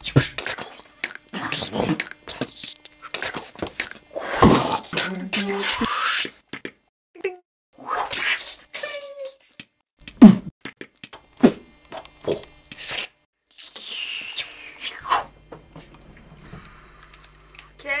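Gunfire and fight sound effects made by mouth: a string of short, sharp spat bangs and noisy bursts, with a few sliding pitched sounds, dying down about two seconds before the end.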